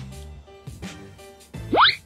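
Background music with a steady beat, and near the end a quick, loud rising whistle-like sound effect, a cartoon-style 'boing'.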